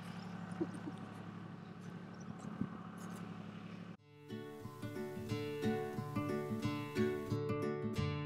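Tractor engine running steadily at a distance, a low even hum, for the first half. About four seconds in it cuts abruptly to background music with plucked acoustic guitar.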